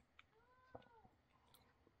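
Near silence with a few light clicks, and about half a second in, one faint short cat meow that rises and falls in pitch.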